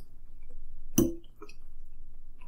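A fork clinks once against a dinner plate about a second in, with a few faint small clicks of eating around it.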